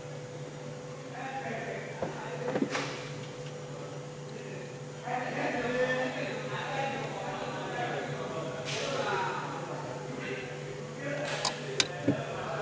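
Hands working small electrical wire connectors: rustling and handling with sharp clicks, two of them close together near the end, over a steady hum.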